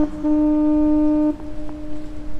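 Ship's horn of the Manly ferry Freshwater sounding short, steady single-note blasts: the tail of one blast at the start, then a second blast about a second long. After the second blast a faint tone at the same pitch lingers.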